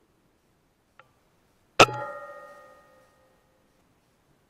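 A single shot from an Air Arms S510 .177 PCP air rifle: a sharp crack with a metallic ring that fades over about a second, preceded by a faint click.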